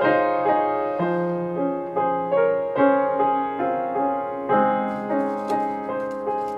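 Solo grand piano playing a slow, gentle piece: notes and chords struck about twice a second, each left to ring and fade, with low bass notes coming in about a second in and again near the end.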